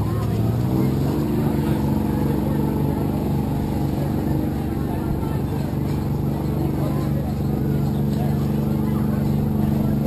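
An engine speeds up over the first second, then runs steadily at a constant pitch.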